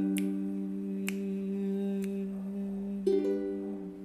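Ukulele chord strummed downward with the thumb and left to ring, slowly fading. About three seconds in a second strum sounds and dies away, closing the song.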